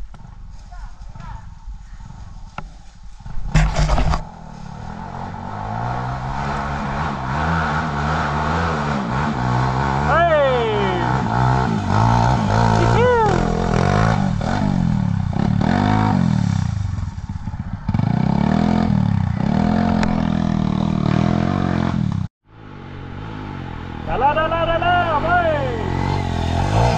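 Enduro dirt bike engines revving up and down hard as the bikes climb a steep, loose forest slope, the pitch rising and falling with each burst of throttle. A sharp clatter about four seconds in, and the sound cuts out for a moment just after twenty-two seconds.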